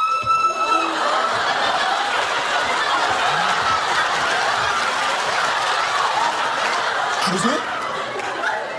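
A held high shout that ends about a second in, then a studio audience laughing steadily for several seconds, fading near the end.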